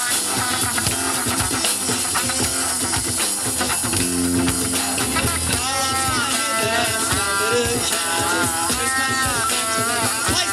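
Live band playing an instrumental passage with electric guitar, acoustic guitar, bass and drums. A lead line of bending notes comes in about halfway.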